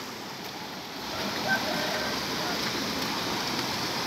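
Steady rush of water from a shallow, rocky mountain stream running down from a waterfall, with faint talking about a second in.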